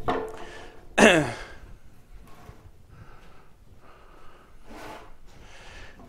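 A man laughing, with a loud falling-pitch laugh about a second in, then quieter breathy laughs and sighs.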